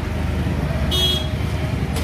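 Street traffic: a vehicle engine running with a steady low rumble, and one short, high-pitched horn toot about a second in.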